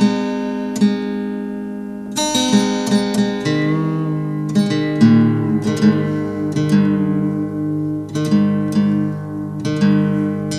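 Acoustic guitar being retuned to a lowered tuning: strings plucked and left ringing while a tuning peg is turned, so that a ringing note bends in pitch about four seconds in.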